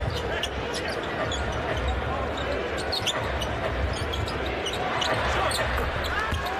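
Live arena sound of an NBA game: a basketball being dribbled on the hardwood court under a steady crowd din, with many short sharp squeaks and clicks scattered throughout.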